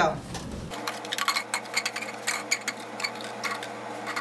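Plastic cups clicking and tapping as they are set onto one another to build a tower, a quick run of light irregular clicks over a faint steady hum.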